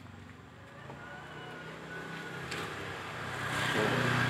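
A motor vehicle's engine passing nearby, a low hum that grows steadily louder toward the end.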